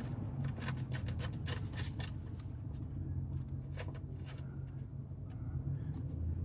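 Small clicks and scrapes of a metal screw being started by hand into a freshly installed rivet nut in a Jeep Wrangler door panel, over a steady low hum.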